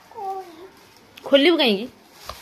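Two drawn-out whining cries, each falling in pitch: a short soft one at the start and a louder, longer one about a second and a half in.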